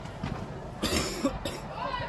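A person coughing twice in quick succession about a second in, loud against a steady background of distant voices in a large hall.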